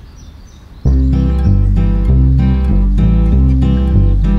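Low, quiet background at first, then about a second in cartoon background music starts: a plucked, guitar-like tune over a bass line with a steady beat.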